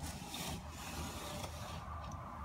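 A sliding window panel rubbing steadily along its aluminium track as it is slid by hand, easing off briefly near the end.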